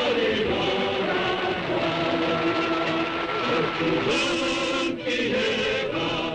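A choir singing slow, long-held notes in several voices.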